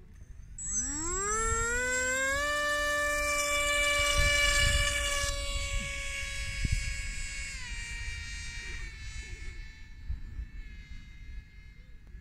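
Zohd Rebel GT's electric motor and propeller spinning up to full throttle for a hand launch: a whine that rises in pitch for about two seconds, holds steady, then drops in pitch about seven or eight seconds in and fades as the plane flies off.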